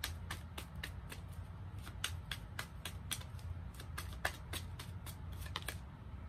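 A tarot deck being shuffled by hand: a string of sharp card snaps and slaps, about three or four a second, uneven in spacing.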